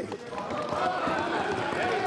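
Many lawmakers thumping their desks in a steady patter of applause, mixed with a crowd of voices cheering.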